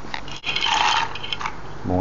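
Dry farfalle pasta poured into a stainless-steel saucepan of broth: a click, then a short clattering rattle lasting about a second.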